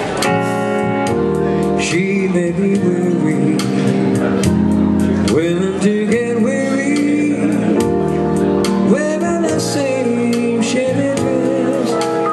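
Electronic keyboard played live in an instrumental introduction: held chords under a lead melody that slides between notes, over a steady percussion beat.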